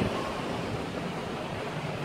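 Steady wind and distant ocean surf, with wind rushing over the microphone.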